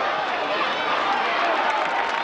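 Football crowd in the stands shouting and calling out over one another during a play: a steady din of many overlapping voices.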